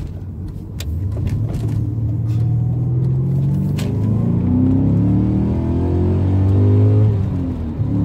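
BMW M5 E39's 5-litre naturally aspirated V8, fitted with a Supersprint X-pipe exhaust, accelerating hard, heard from inside the cabin. The engine note climbs in pitch and gets louder, dipping briefly near the end before pulling on.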